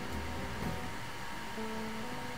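NEMA 17 stepper motors of a 3D-printed DIY CNC machine whining steadily as they drive the axes, with a lower second tone joining about one and a half seconds in as the motion changes.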